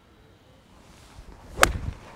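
Golf iron striking a ball off a short tee on a slow half swing: one sharp click about one and a half seconds in, after a faint rising swish of the club coming through.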